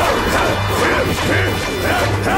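Anime fight sound effects: a rapid flurry of punch and impact hits crashing over continuous soundtrack music, with swooping tones that rise and fall between the hits.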